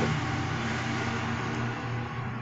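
Steady background noise: a low hum with an even hiss over it, and no distinct event.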